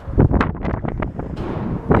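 Wind buffeting the camera's microphone in uneven rumbling gusts, with a few knocks as the camera is swung around.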